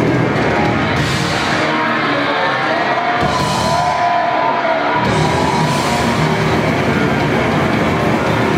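Grindcore band playing live at full volume: distorted guitars, bass and drums. About three seconds in the low end drops away for a couple of seconds under a wavering held note, and the full band comes back in at about five seconds.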